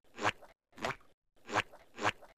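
Footsteps: three single steps, evenly spaced about half a second apart, with silence between them.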